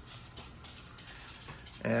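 Faint rustling and light handling noise as a hand moves over denim jeans on a hanger, with a few soft taps.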